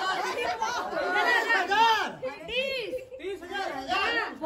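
Overlapping chatter: a small group of people talking at once, with no single voice clear.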